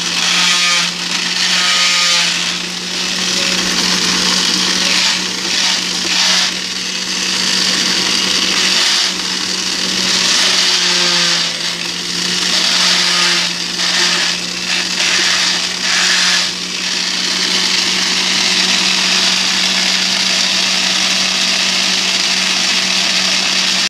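Centrifugal juicer running steadily, still grinding fruit: a constant motor hum under a loud high whirring that dips and swells every second or two as pieces pass through.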